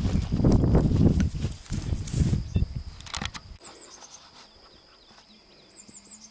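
Rustling, rumbling and knocking of close handling and movement at the microphone for about three and a half seconds, then it cuts off suddenly to quiet outdoor ambience with a few faint, high bird chirps.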